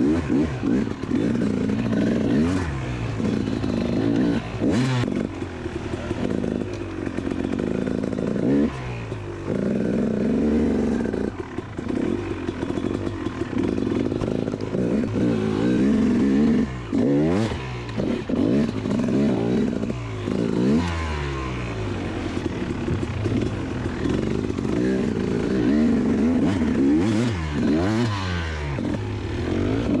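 KTM dirt bike engine heard from onboard, revving up and down repeatedly under throttle as the bike is ridden through snow, with brief drops in revs between pulls.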